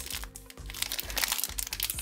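Thin plastic blind-bag wrapper crinkling and crackling as hands crumple and pull it open, over background music.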